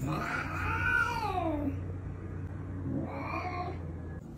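A cat meowing twice: a long drawn-out meow that rises and then falls, then a shorter one about three seconds in.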